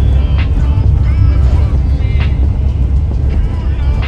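Steady low road and engine rumble inside a moving Ram ProMaster 2500 cargo van, with music with singing playing over it.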